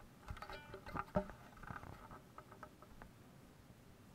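Faint knocks, taps and rustles of an acoustic guitar and a small plucked instrument being handled and settled into place before playing. There is a brief ringing tone about half a second in, and a sharper knock just after one second.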